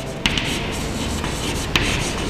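Chalk writing on a chalkboard: a steady scratchy rubbing, with a couple of sharp taps as the chalk strikes the board.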